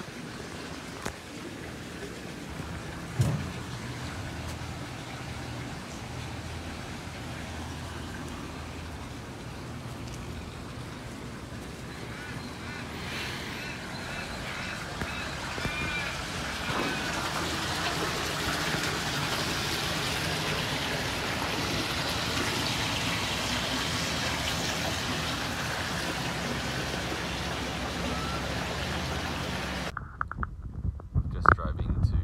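Waterbirds calling over a steady outdoor hiss, the calls clustered about halfway through, with the hiss growing louder in the second half. A single sharp knock sounds about three seconds in.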